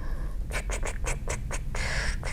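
A quick run of about six short scratchy noises, then a longer hiss near the end, over a steady low hum.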